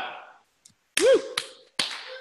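A voice cheering a short "woo" about a second in, with a few sharp clicks around it.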